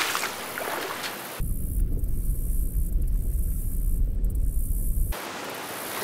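Cartoon water sound effects after a plunge down a waterfall: a hiss of splashing water, then from about a second and a half in a deep, muffled rumble for nearly four seconds, as if heard underwater. The hiss of water returns near the end.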